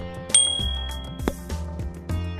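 Background music with a bright bell ding about a third of a second in that rings for about a second, then a sharp click: the notification-bell and click sound effects of a subscribe animation.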